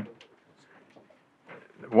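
A man's speaking voice ends one word, falls quiet for about a second and a half of faint room tone, then starts speaking again near the end.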